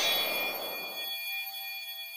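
Shimmering logo-sting sound effect: a rushing hiss laced with high, sparkling ringing tones. The hiss fades out about a second in, leaving the bell-like tones ringing faintly.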